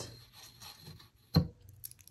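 Faint rubbing and handling as a steel ruler is set on a cloth-covered table and a beaded shell-and-gemstone strand is brought over it, with one sharp knock a little past halfway and a few small clicks near the end.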